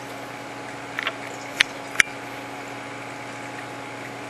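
Reef aquarium pumps and protein skimmer running with a steady electric hum, broken by three short sharp clicks between about one and two seconds in.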